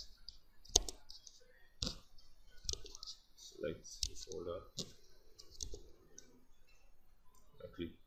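Computer mouse button clicks: several short, sharp clicks spaced about a second apart.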